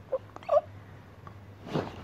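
A person's short whimpering cries and then a breathy gasp, voiced in brief separate bursts, over a faint steady hum.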